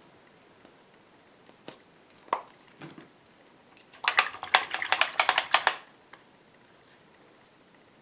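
A quick clatter of sharp clicks and taps from small hard objects, about ten in under two seconds near the middle, after a couple of single clicks; between them the room is near silent.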